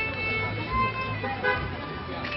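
A solo violin playing sustained notes, under a steady low engine hum from a passing motor vehicle.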